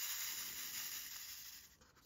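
Soft hissing rustle of plastic diamond painting drill trays being handled and moved, fading away over about a second and a half.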